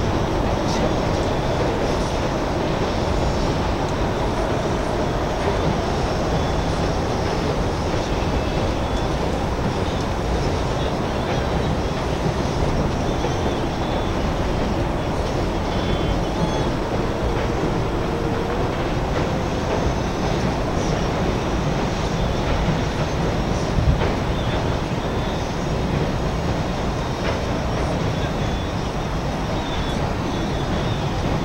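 Steady, loud outdoor background rumble and hiss with no clear events, apart from a small knock near the end.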